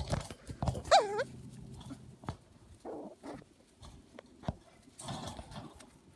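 Shetland sheepdog puppy giving a sharp, high yelp about a second in, its pitch wavering, followed by a few quieter, shorter yips and scuffles.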